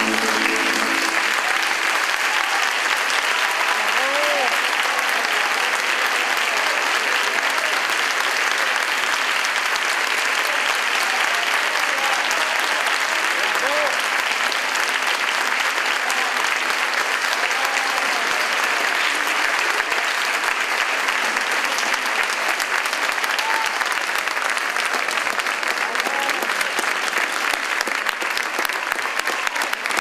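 Large audience applauding steadily and at length, with a few voices calling out over the clapping. The last notes of a mandolin-and-guitar plectrum orchestra die away at the very start.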